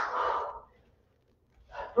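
A woman's sharp, breathy exhale as she throws a punch, lasting about half a second.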